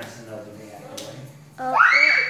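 A person's voice: quiet talk, then about one and a half seconds in a sudden loud, high-pitched exclamation of "oh" that rises in pitch, close to a shriek.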